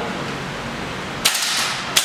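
VFC HK416C gas blowback airsoft rifle firing two single shots about 0.7 s apart. The first comes a little over a second in and the second near the end; each is a sharp report with a short noisy tail.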